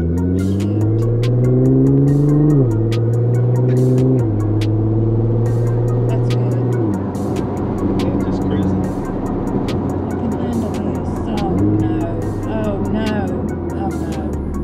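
Engine of a tuned car on E85, heard from inside the cabin, pulling hard under acceleration. Its pitch climbs and drops sharply at each upshift, three times in the first seven seconds, then runs fairly level.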